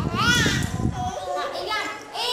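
A baby's high-pitched squeal that rises and falls at the start, with a low thudding underneath, followed by a few shorter babbling sounds.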